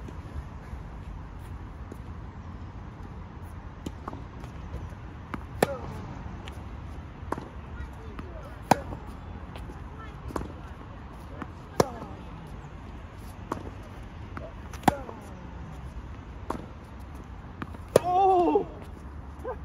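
Tennis ball rally on a hard court: sharp pops of racket strings striking the ball, about every one and a half seconds. The nearer player's backhands are the loudest, about every three seconds, and the partner's fainter returns fall in between.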